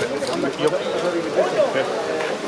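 Several people talking at once in casual conversation, with a couple of brief sharp clicks near the start.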